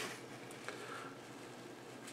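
Faint handling of a small metal vape tank base and its coil between the fingers, with one small click a little under a second in, over quiet room tone.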